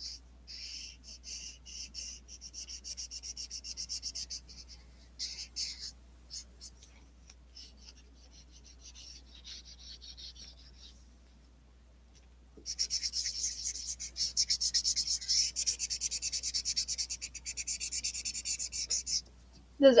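Black felt-tip marker scribbling quickly back and forth on paper, filling in a large dark area in rapid short strokes. The strokes go soft for a while in the middle, then come back faster and louder from a little past halfway until just before the end.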